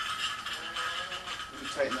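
Cordless drill motor running with a steady whine, the bit pulled out of the wood. A muttered voice comes in near the end.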